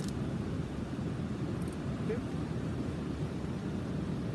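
Steady low rushing of river water running over the nearby falls and rapids.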